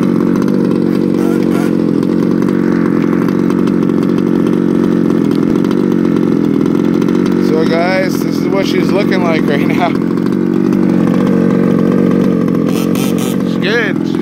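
Small two-stroke gas engine of a 1/5-scale RC truck idling steadily, the truck parked with the engine running.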